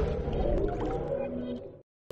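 The closing sustained, gliding synthesizer tones of a TV channel's logo jingle, fading out and stopping dead shortly before the end.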